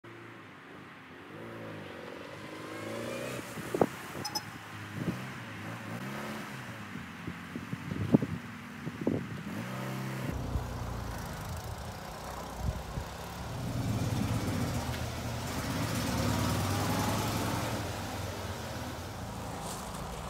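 A small car engine running at idle, with a few sharp clicks in the first half. From about halfway through, a steady motor hum joins it as a garage door opener raises the door.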